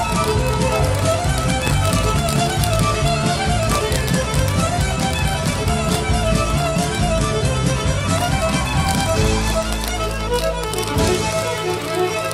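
Recorded country music: a fast fiddle solo played over bass and drums. Its low end changes about nine and a half seconds in.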